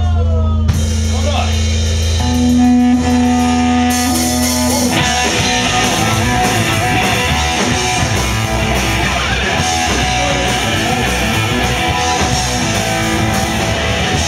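Live hardcore punk band starting a song: a guitar plays alone with one held note, then drums and distorted guitars come in together about five seconds in and the full band plays on loud.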